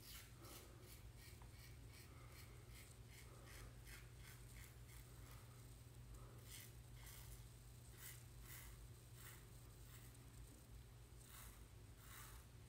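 A Vikings Blade Vulcan double-edge safety razor scraping through a day and a half of stubble on the neck, in short, faint strokes repeated a few times a second.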